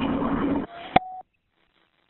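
Telephone line audio: a noisy open line, then a sharp click and a short steady beep, and the recording cuts to dead silence a little over a second in.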